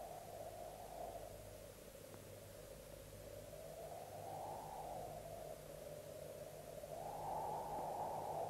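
Faint wind-like rushing that slowly swells and dies away, loudest about halfway through and again near the end, over a low steady hum.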